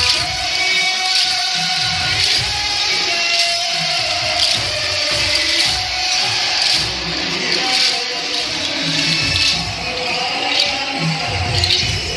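Devotional song with a sung melody over a sharp percussion beat about once a second.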